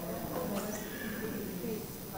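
Faint, off-microphone voices of a small church congregation speaking their response together at the breaking of the bread.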